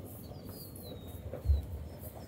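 Faint, thin falling whistle of a distant bird calling, over a steady low outdoor rumble, with one dull low thump about one and a half seconds in.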